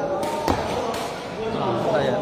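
A sepak takraw ball kicked hard: one sharp smack about half a second in, over the chatter of spectators' voices.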